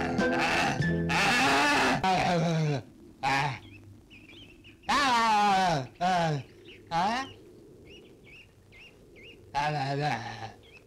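Film score fades out under a loud, noisy burst about a second in. Then come a series of loud human yells with wavering, falling pitch, separated by short gaps in which birds chirp faintly.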